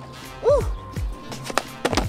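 Background music with a steady beat, over the clack and roll of a bamboo penny board's plastic wheels on a hard court as a shove-it is landed.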